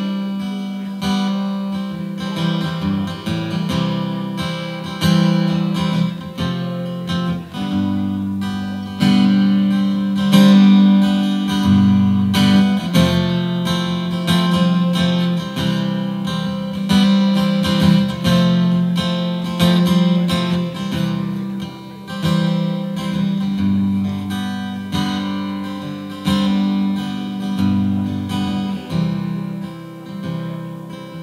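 Gibson Southern Jumbo acoustic guitar strummed through chords in a steady rhythm, an instrumental passage with no singing.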